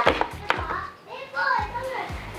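A child's voice over background music, with two sharp clicks in the first half second.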